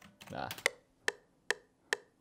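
FL Studio's metronome clicking out the recording precount at 142 BPM: four short, quiet ticks a little under half a second apart, starting about half a second in.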